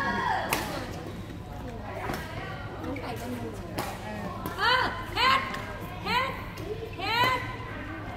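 Badminton rally in a large echoing hall: sharp racket hits on the shuttlecock about a second and a half apart early on, then a quick run of short squeaky chirps in the second half.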